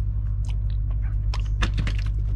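Close mouth sounds of a person chewing toast: a scatter of small clicks and smacks, over a steady low hum.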